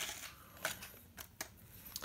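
A few light, sharp plastic clicks, about four spread irregularly across two seconds, from a remote-control toy fighting robot and the buttons of its remote being pressed.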